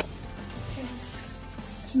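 A hand rubbing oil over a metal pizza pan, a soft steady rubbing, with background music.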